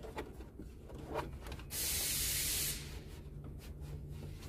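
Light rubbing and clicking of hands working among the plastic parts inside a car's stripped dashboard. A sharp hiss lasting about a second, starting and stopping abruptly, is the loudest sound.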